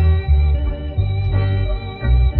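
Instrumental passage of a slowed, reverb-heavy, drumless edit of a reggae song: deep bass notes under guitar and organ, with no singing.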